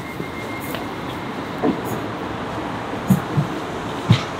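A DLR light-rail train running at the station platform: a steady, even noise of wheels and motors.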